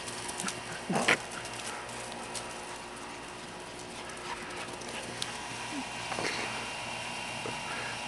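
A dog gives one short yelp about a second in, over a steady low background hiss.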